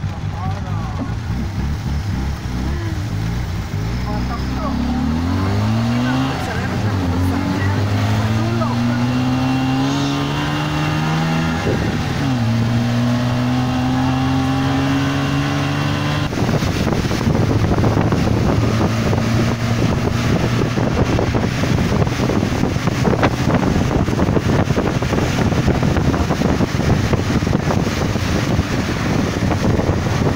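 Tuk-tuk engine pulling away and accelerating, its pitch climbing through the gears with sudden drops at the gear changes. From about halfway through, a loud rush of wind and wet-road noise takes over, with the engine running steadily beneath it.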